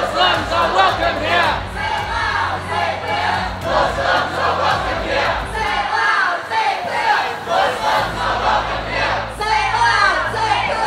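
Crowd of protest marchers, many voices shouting together, over a low steady tone underneath.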